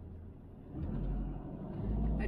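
Motorhome engine and tyre noise during slow driving, a low rumble that grows louder about two-thirds of a second in.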